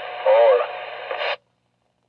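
Realistic TRC-433 CB radio receiving on channel 1, putting out a thin, tinny voice transmission and static through its speaker. The sound cuts off suddenly about a second and a third in.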